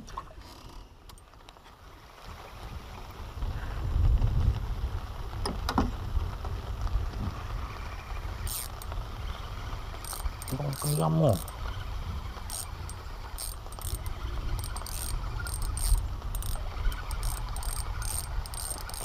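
Spinning fishing reel clicking in short irregular runs from about halfway through, as the rod is worked under a bend. A steady low rumble runs underneath.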